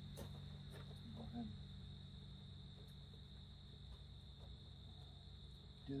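Faint, steady chirring of crickets, with a low hum underneath and a few faint ticks.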